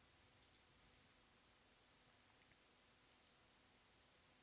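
Near silence, with faint computer mouse clicks in two quick pairs: one about half a second in and one about three seconds in.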